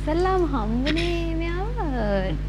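A high voice held in long, drawn-out notes that glide up and down in pitch, rising to a peak near the end.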